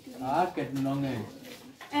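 A man's voice speaking, with one sound drawn out on an even pitch for about half a second before a short pause.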